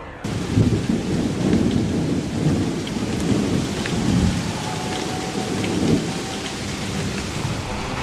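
A rainstorm-like hiss with a deep, continuous rumble like thunder, cutting in suddenly just after the start and running steadily.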